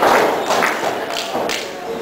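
A few thuds of wrestlers' bodies hitting the ring canvas, over voices in the hall.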